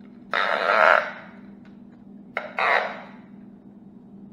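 Adhesive tape pulled off in two quick rasping strips, each well under a second, the second starting with a sharp click, as it is used to lift loose scales from a snakeskin bow backing.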